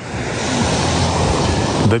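Sea waves washing onto a pebble beach: a loud, steady rush of surf that swells gradually.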